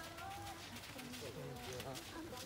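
Faint, distant talking in a lull between the instructor's shouted cues.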